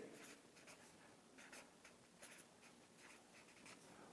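Marker pen writing on a paper flip chart: faint, short scratching strokes.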